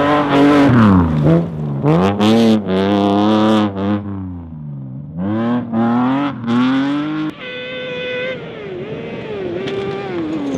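A BMW E36 rally car's engine revving hard on a gravel stage, its pitch climbing and dropping repeatedly through gear changes and lifts, with a few short harsh bursts of noise over it. About seven seconds in, the sound cuts to a different engine, an off-road buggy, at a higher, steadier pitch that later wavers and falls.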